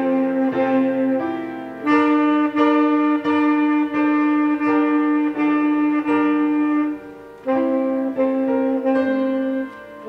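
Tenor saxophone playing a Christmas melody with piano accompaniment. About two seconds in it holds one long note for some five seconds, with short breaks between phrases near seven seconds and at the end.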